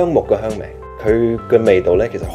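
A man speaking Cantonese over background music with steady held notes.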